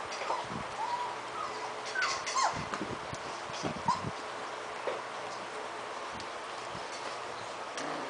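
Three-and-a-half-week-old puppies giving short, high squeaks and whimpers as they play, with light knocks and scuffles from their bodies and paws on the floor. Most of the squeaks fall in the first half.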